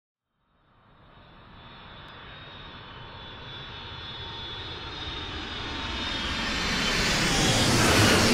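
A jet aircraft approaches: engine noise with a steady high whine fades in and grows steadily louder, peaking as it passes close at the very end.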